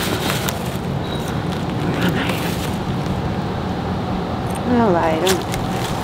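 Handbags and a plastic bag being handled, with short rustles and clicks, over a steady outdoor background rumble; a voice speaks briefly near the end.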